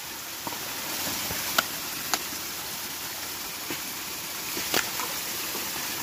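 Steady rush of a creek, with a few sharp clicks of rock on rock, the loudest about a second and a half in, at two seconds and near five seconds.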